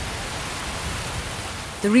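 Heavy rain falling in a steady downpour.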